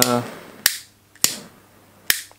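Jet-flame butane lighter being sparked: two sharp clicks of its piezo igniter, about half a second apart, the first followed by a short fading hiss of the flame. The lighter has suffered on the trip: its flame comes up high briefly and then dies down.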